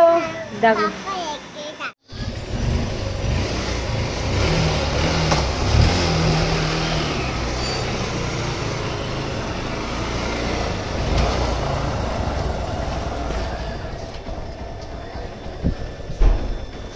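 A Honda motorcycle's engine running steadily with a low rumble, its pitch wavering slightly now and then, easing off near the end. A woman and a small child talk briefly at the very start.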